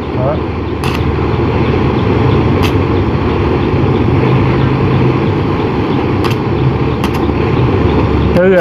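Gas blowtorch flame running steadily as it heats aluminium for welding, with a low steady hum underneath and a few sharp clicks.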